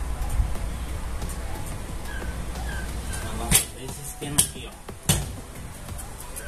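Motorcycle roller chain being pulled by hand around the rear sprocket: three sharp metallic clinks in the second half, over a steady low hum.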